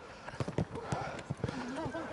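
Gaelic footballs being bounced and soloed on artificial turf by a group of players, mixed with their running footsteps: a run of irregular, overlapping thuds. Faint voices call in the background.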